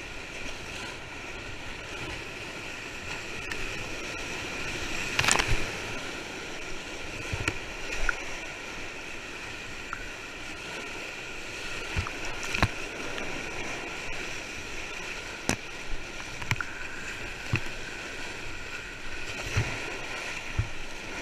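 Whitewater rapids rushing steadily around a kayak, heard close from the boat, with sharp splashes and knocks now and then as paddle strokes and waves hit the boat; the loudest splash comes about five seconds in.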